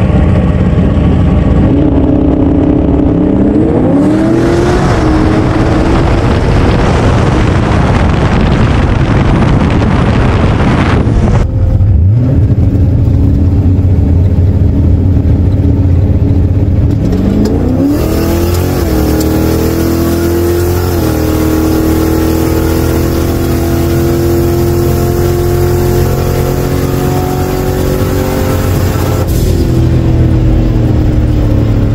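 A drag-racing Lincoln Town Car's engine revving up with a long rushing noise, as in a burnout. After a cut it revs hard at the launch and holds a high, slowly climbing pitch through an eleven-second pass, heard from inside the cabin, with the rev limiter reached, then drops in pitch as the throttle comes off near the end.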